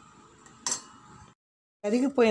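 A spatula knocking once against the metal pan of cooking caramel, a short clink that rings briefly while it is being stirred; the sound cuts off suddenly a little later.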